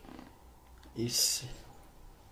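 One short, breathy burst of a person's voice about a second in, hiss-like with a little voiced sound under it, over a faint room background.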